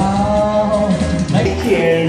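A singer holds a long final sung note over a pop backing track. About a second and a half in, it cuts to a different live recording, with a new backing track beginning.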